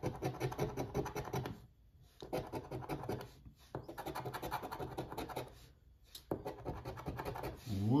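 A metal coin-style scratcher tool scraping the coating off a paper scratch-off lottery ticket in quick rasping strokes. It comes in four spells with brief pauses between them, as row after row of numbers is uncovered.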